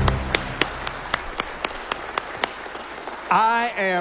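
Congregation clapping after a worship song: separate, scattered claps in a large room, a few a second, while the band's last low chord dies away at the start. A man begins speaking into a microphone near the end.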